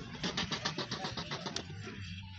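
A camel vocalising: a rapid, rattling pulsed grunt of about ten pulses a second that lasts about a second and a half, then fades.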